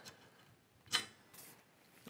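Two clicks from a Harris bipod being handled: a sharp one about a second in and a fainter one half a second later.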